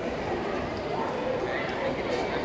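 Indistinct voices over the steady noise of a busy pedestrian street.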